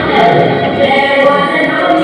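A song sung by a group of voices, continuous and steady.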